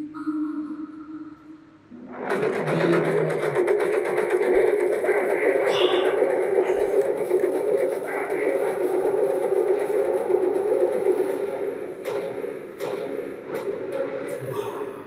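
Film-trailer soundtrack: a short, quieter passage with a few held tones, then, about two seconds in, a sudden loud, dense swell of music that carries on until near the end.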